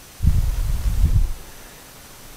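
Low rumbling buffeting on the microphone for about a second, then a faint low hiss.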